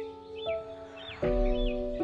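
Gentle piano music with sustained chords, a new chord struck about every half second to second, the loudest with a deep bass note a little past halfway. Short, repeated bird chirps sound over it, about two a second.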